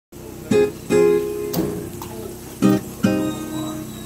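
Background music: strummed acoustic guitar chords, struck in pairs with a pause between.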